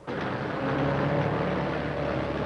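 Armored truck engine running as the truck drives up, a loud steady hum over a rumbling haze that cuts in suddenly.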